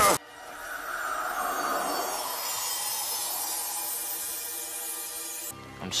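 Soft, steady background music from a TV drama's score, with a hissy texture; it starts suddenly and cuts off abruptly about five and a half seconds in.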